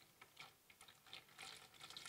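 Near silence: room tone with a few faint, light clicks.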